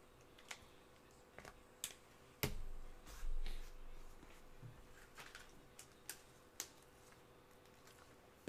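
Trading cards handled by gloved hands: scattered light clicks and ticks as cards are moved and set down, with a sharper knock about two and a half seconds in followed by a brief dull bump.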